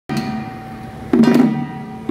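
Hand-held drums on long wooden handles struck together by a ritual drum troupe, beating a double stroke about once a second over a steady held tone.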